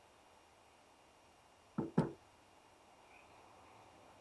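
Two quick knocks, about a fifth of a second apart and about two seconds in, from a hand bumping something by the guitar.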